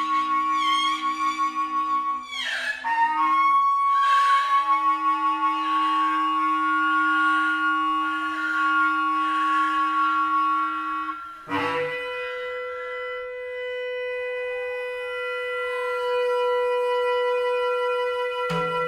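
Held notes from several wind instruments overlapping in a free improvisation, led by a long transverse bamboo flute. About two to three seconds in the pitches bend and slide. About eleven and a half seconds in a new lower note enters with a sharp attack and holds steady.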